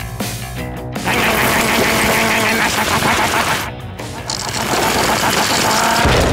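Cartoon sound effect of a wall being broken through: a fast rattling clatter like a jackhammer over background music, with a short break a little before the end.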